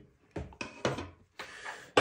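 Metal clicks and knocks from an ERA multipoint-lock centre case being taken apart as its steel cover plate is lifted off and laid down, with a short scraping slide near the end.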